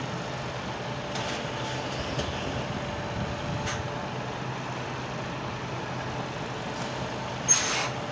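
Articulated lorry's diesel engine running steadily at low speed as the tractor unit hauls a container trailer past at close range, with a brief sharp hiss near the end.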